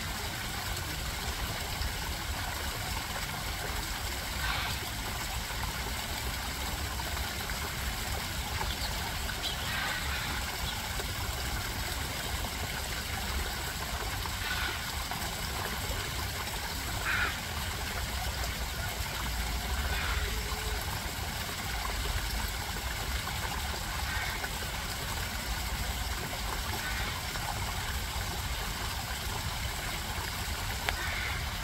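Steady trickling and running water where house sparrows bathe, with a brief, sharp, higher sound every few seconds.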